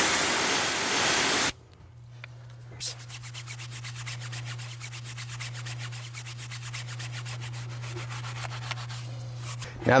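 A pressure-washer gun sprays water onto a tire brush for about a second and a half, then cuts off suddenly. After a short pause, the stiff-bristled Detail Factory tire brush scrubs the foam-covered tire in fast, even back-and-forth strokes.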